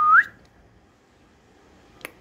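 A person whistling one short, high note that holds and then rises at the end, over within the first half-second.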